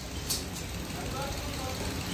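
Steady low mechanical rumble, with a faint short tick about a quarter second in.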